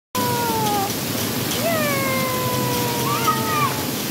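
Splash-pad water spraying steadily, with high, drawn-out vocal cries from children over it: a short falling cry at the start, a long slowly falling one through the middle, and a shorter rising-and-falling one near the end.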